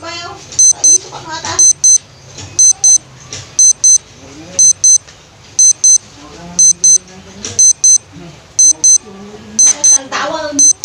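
An electronic alarm beeping in loud, high-pitched double beeps, about one pair a second, with voices talking faintly underneath.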